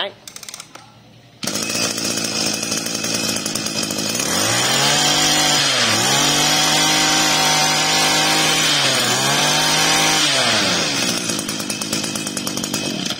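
Hitachi 21 cc two-stroke brush cutter engine starting up about a second and a half in, freshly primed, and idling. It is then revved up hard for several seconds with two brief dips, and drops back to idle near the end, running crisp and clean.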